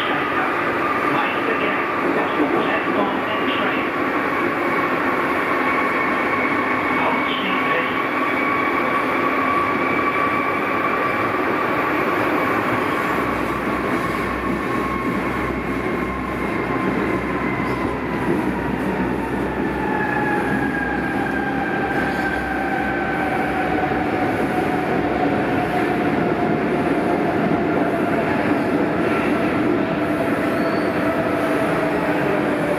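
Running noise inside a Berlin U-Bahn G1/E subway car travelling through the tunnel: a steady rumble with a whine on top. Over the second half the whine slowly falls in pitch as the train slows toward the next station.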